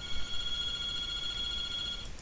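A steady, high-pitched electronic tone, held at an even level for about two seconds and then cut off.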